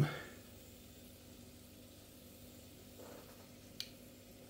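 Faint, steady sizzle of hot fat in a roasting tray under freshly oven-cooked pork belly slices, over a low steady hum, with a tiny click near the end.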